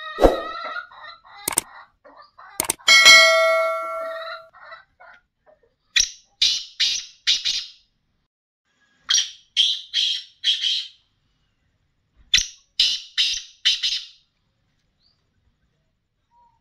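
Black francolin calling three times, each call a harsh, grating phrase of four or five quick notes, about three seconds apart. A chicken clucks and squawks during the first few seconds.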